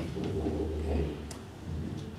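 A man's voice saying a short "okay?" in a small lecture room, followed by a brief click just over a second in.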